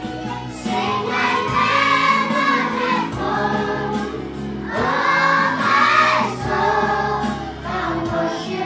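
A group of children singing together in chorus over a steady low instrumental accompaniment, the phrases swelling about a second in and again near the middle.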